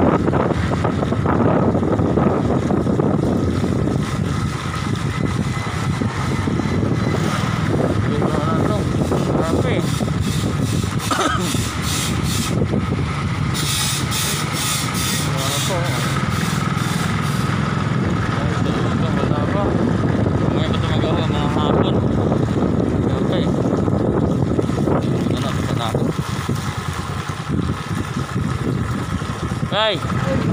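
A motorcycle running while on the move, with steady wind noise over the microphone. Near the middle there is a stretch of brighter hiss.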